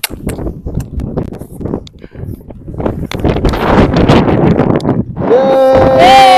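Wind buffeting and crackling on the microphone, then, near the end, a long, loud yell of celebration held on one note that steps up higher as it goes on.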